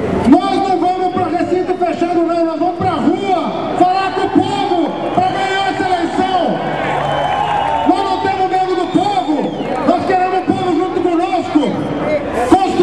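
A man giving a speech into a handheld microphone, his voice amplified over a public-address loudspeaker, talking continuously.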